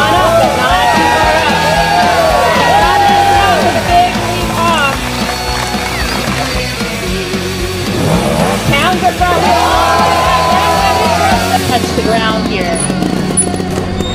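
Background music: a song with a sung vocal line over a steady low accompaniment.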